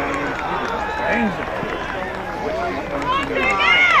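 Spectators and players shouting and calling over one another during open play in a football match, with one loud, high-pitched shout near the end.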